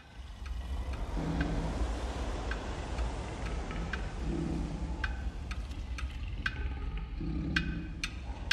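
Light clicks and taps of cardboard pieces being handled and pressed together by hand, scattered unevenly, over a steady low background rumble.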